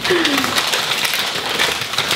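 Gift wrapping paper being torn and crinkled as a present is unwrapped, a steady crackling rustle, with a short falling vocal sound about a tenth of a second in.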